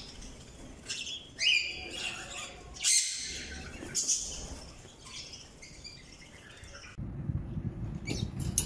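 Budgerigars chattering and calling: a string of short chirps and squawks, some sweeping upward in pitch, loudest in the first half and then thinning to quieter chatter. In the last second the birds give way to a low steady rumble.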